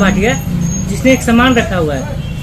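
A man speaking, in two short stretches, over a steady low rumble.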